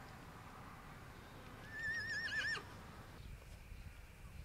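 A horse whinnying once about two seconds in: a short, wavering high call that falls away at the end.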